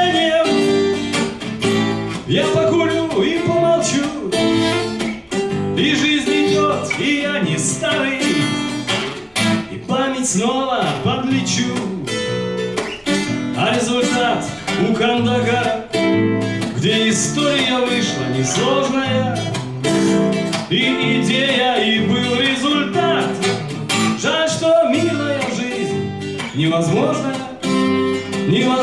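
A man singing with a strummed twelve-string acoustic guitar accompanying him.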